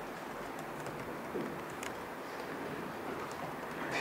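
A few faint, scattered keystrokes on a computer keyboard over steady room hiss, with one faint short low sound about a second and a half in.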